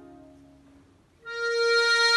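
Steirische Harmonika (Styrian diatonic button accordion) in a tune: a held chord fades away to a brief near-silent pause, then about a second and a quarter in a single high note sounds and is held steady.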